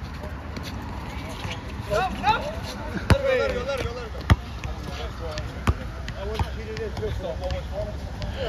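Basketball bouncing on an outdoor asphalt court: a few sharp single thuds, the loudest about three and four seconds in, with players calling out in the background.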